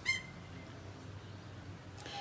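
A single short bird chirp right at the start, then faint, steady background.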